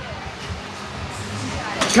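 Faint background voices and room noise, with a man's loud shout of encouragement starting right at the end.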